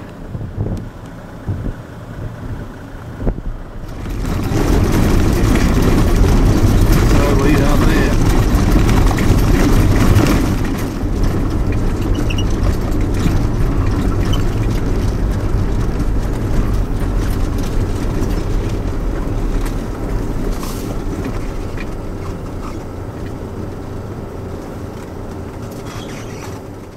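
A four-wheel drive's engine and tyres rumbling steadily on a rough unsealed track, heard from inside the cabin. The rumble comes in loud about four seconds in and eases somewhat towards the end.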